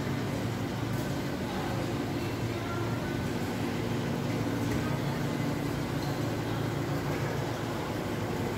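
Steady low hum of running processing machinery, a few low tones held evenly with no breaks.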